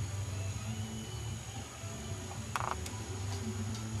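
A low steady rumble with a few short plastic clicks, the loudest about two and a half seconds in: a kitten pawing and nosing a plastic ball-track cat toy.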